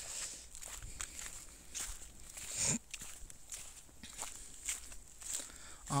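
Footsteps on a forest path strewn with fallen leaves: soft, irregular steps and rustles. There is a brief low vocal sound about halfway through.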